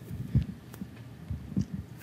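Muffled low thumps and bumps of a handheld microphone being handled and passed between people, the loudest about half a second in and a few smaller ones later.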